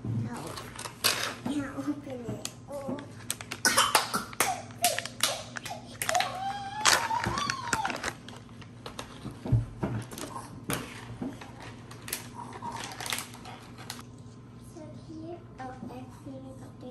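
A young child's voice, with a plastic snack pouch crinkling in short sharp crackles as it is opened and handled.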